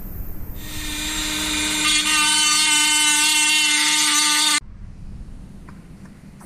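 Handheld rotary tool with a conical grinding stone running at speed: a steady high whine that builds over the first couple of seconds, holds, and then cuts off abruptly about four and a half seconds in.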